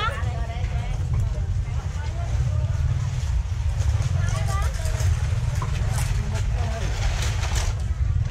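Open-air market ambience: scattered voices of vendors and shoppers talking over a steady low rumble.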